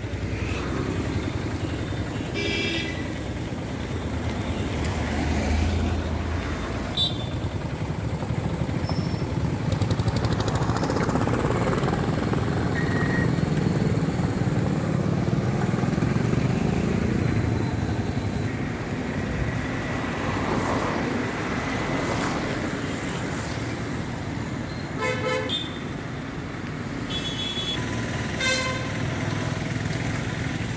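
Street traffic on a flooded road: a steady rush of vehicle engines and wheels moving through water, with several short vehicle horn toots, once early, once a few seconds later and a cluster of them near the end.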